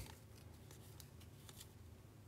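Near silence with a few faint soft clicks of baseball trading cards being slid off the front of a hand-held stack one at a time.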